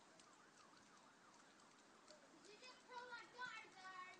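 Near silence, with faint wavering tones in the second half.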